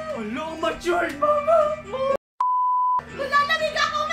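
Voices talking excitedly, cut off abruptly about two seconds in. After a moment of dead silence comes a single steady electronic bleep of about half a second, an edited-in censor-style beep, and then the voices start again.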